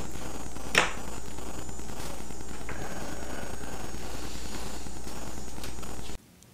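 A steady mechanical whir with a low hum underneath, unchanging throughout, with one short sharp click about a second in.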